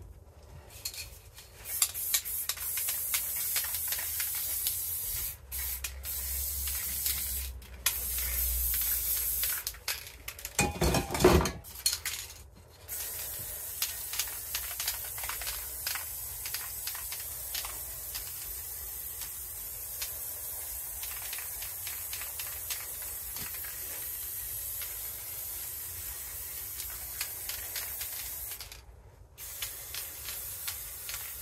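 Aerosol spray paint can spraying: several short bursts of hiss with brief gaps, one louder and fuller about eleven seconds in, then one long steady spray that stops shortly before the end.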